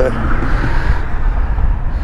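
Loud, steady low rumble of outdoor background noise, with a brief trailing bit of speech at the very start.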